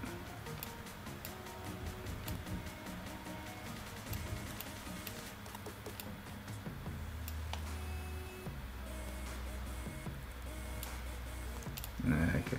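Scattered soft clicks of a computer mouse and keyboard at an editing desk, over faint background music.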